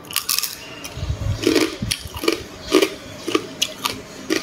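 Crab being eaten close to the microphone: an irregular run of sharp crunches and clicks as crab shell and meat are bitten and chewed, with a denser, heavier stretch of chewing about a second in.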